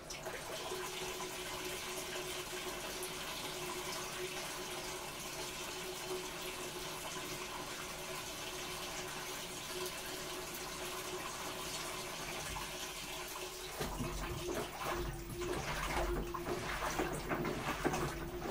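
Washing machine filling with water: a steady rush of inflowing water with a faint steady hum. About 14 s in, low, uneven sloshing and knocking join in and the sound grows a little louder.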